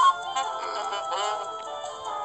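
Background music from an animated children's story app, with short wavering, pitch-bending voice-like cartoon sounds over it about half a second and a second in.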